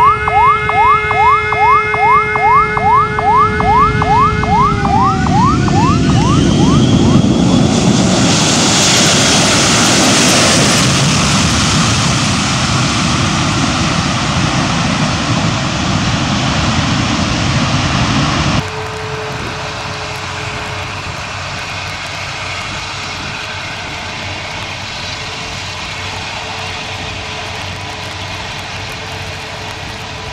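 Twin-jet airliner landing low overhead. Its engine whine drops in pitch as it passes about five seconds in, under a fast repeating rising wail. Then comes a loud jet roar that peaks and fades. The sound then cuts abruptly to a quieter, steady jet-engine rumble with a low hum.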